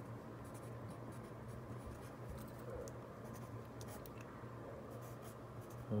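Handwriting on lined notebook paper: a run of short scratchy strokes as the writing tip moves across the page, over a faint steady low hum.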